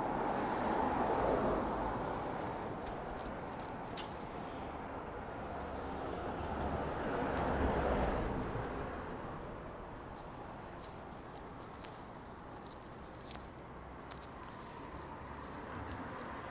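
Street traffic noise passing in two slow swells, one in the first couple of seconds and another around eight seconds in, under a faint high pulsing chirp. A few light clicks follow in the quieter second half.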